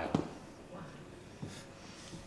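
A pause in the talk: faint room noise with a sharp knock just after the start and a softer one about a second and a half in.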